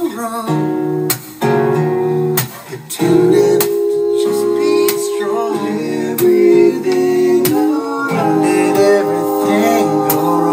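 Band music led by strummed acoustic guitar with held guitar notes, a male voice singing in places.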